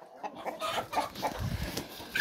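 Chickens clucking in short, scattered calls, with a brief low rumble about one and a half seconds in.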